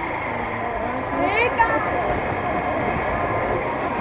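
Small motorcycle engine running steadily as the bike rides slowly along a street, with a steady mix of engine and road noise. A faint voice rises briefly about a second in.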